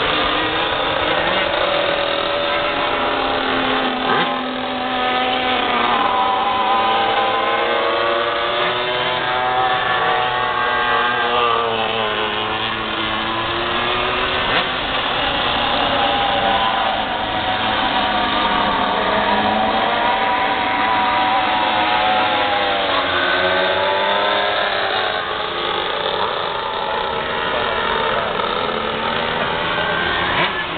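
Several 125cc two-stroke shifter kart engines racing together, their pitch rising and falling over and over as the karts accelerate and back off.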